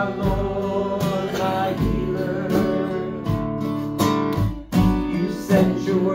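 Acoustic guitar strummed steadily, accompanying a man singing a slow worship song.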